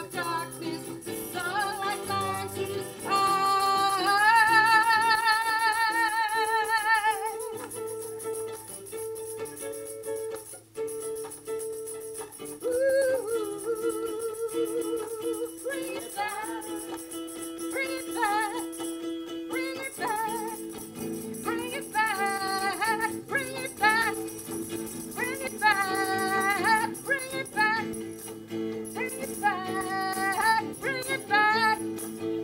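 A woman singing a song with vibrato over strummed electric guitar chords, with a tambourine jingling along. About three seconds in she holds one long wavering note for roughly four seconds.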